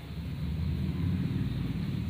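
A low rumble that swells slightly and then eases off.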